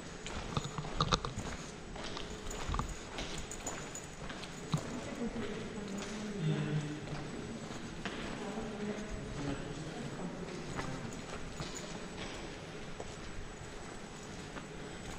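Footsteps on a hard floor with scattered small knocks, and other people talking faintly in the background around the middle.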